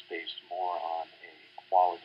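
Only speech: one person narrating, with the muffled, narrow sound of a low-quality voice recording and a faint steady hum underneath.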